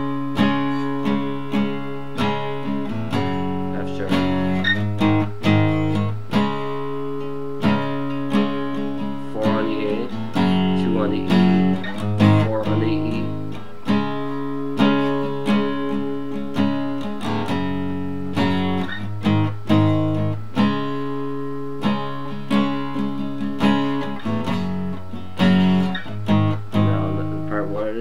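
Steel-string acoustic guitar strummed in a slow, steady chord progression, each chord ringing on between strokes and changing every few seconds.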